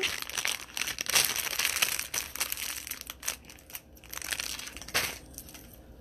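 Thin clear plastic jewelry bag crinkling as it is handled and pulled open. The crackling is dense for the first few seconds, then sparser and quieter.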